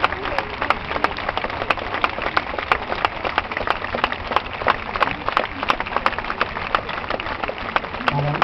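People clapping their hands together in a steady rhythm, about three claps a second, over a murmur of crowd voices.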